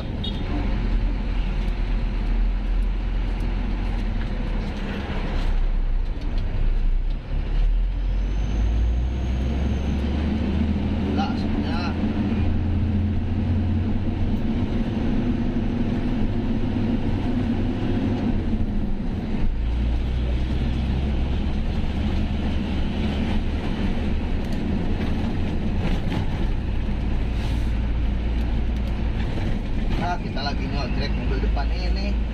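Truck's diesel engine running steadily, heard from inside the cab as it drives along. Its low drone shifts in pitch about eight seconds in and again around twenty seconds in.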